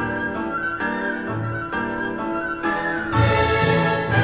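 Instrumental background music: a melody of separate held notes over a soft accompaniment, swelling fuller and louder about three seconds in.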